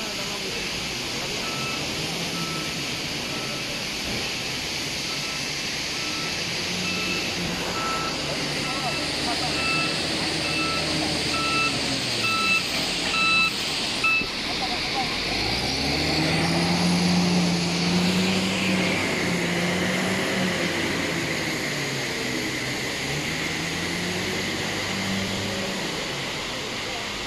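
A working vehicle's reversing alarm beeps about once a second over its running engine and stops about halfway through. The engine then revs up, its pitch climbing and wavering as it works at higher speed.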